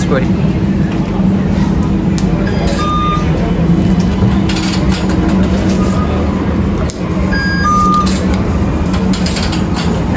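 Tram turnstile card reader beeping as a transit card is tapped on it: one short beep about three seconds in, then two more close together near eight seconds. A steady low hum runs underneath.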